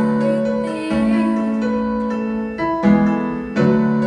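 Live band music in a soft passage led by keyboard in an electric-piano voice: sustained chords that change about once a second, with no drums.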